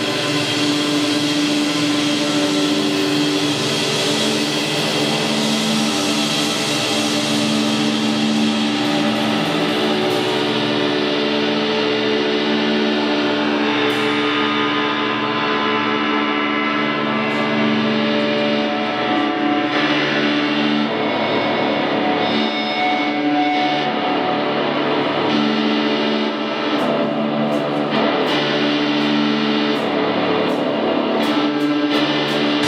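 Live band's distorted electric guitars holding a sustained drone thick with echo and effects, with little or no drum beat; a bright high wash at the start fades out over the first half, and a few sharp clicks come near the end.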